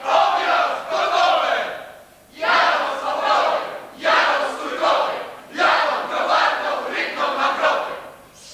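A group of voices chanting together in unison, in four phrases of about two seconds each with short breaks between them.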